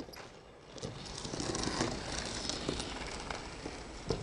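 Figure skate blades gliding and scraping on rink ice: a steady hiss that builds about a second in, with a few faint clicks.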